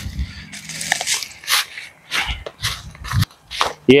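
Footsteps crunching through dry fallen leaves, about two steps a second.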